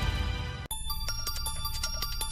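Channel ident music stops abruptly less than a second in, then a television news theme starts: electronic music with a quick, even ticking beat under high ringing tones.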